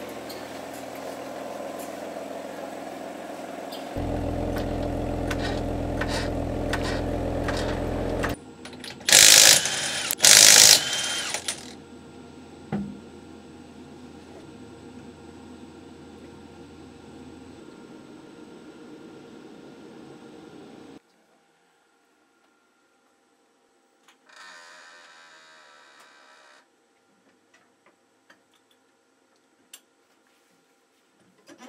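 Dyno-cell and workshop machinery: a large drum fan running with a steady hum, louder for a few seconds, then two short, very loud hissing bursts from a tool. After a sudden drop to near silence comes a brief burst of mechanical ratcheting and a few clicks, as wheel and dyno-hub hardware are worked on.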